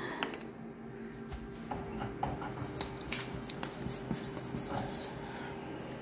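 Colour photocopier humming steadily while its lid and touchscreen controls are handled, giving a scattering of light clicks and taps as a copy is started.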